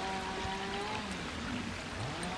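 Faint, steady trickle of water, with a faint held tone through the first second.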